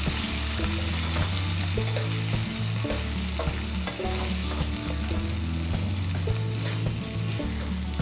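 Soaked sama (barnyard millet) sizzling in hot oil in a nonstick wok as it is stirred with a wooden spatula: a steady frying hiss with stirring strokes. A low bass line of background music runs underneath.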